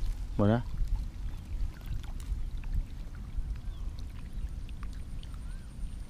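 Low, uneven rumble of wind on the microphone at the water's edge, with a short spoken word about half a second in and a few faint ticks and chirps.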